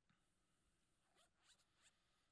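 Near silence: room tone with three faint, brief rustles in the second half.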